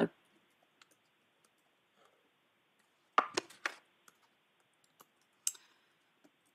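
A few short clicks over faint hiss: a close cluster about three seconds in, then a couple of small ticks and one sharper click near the end.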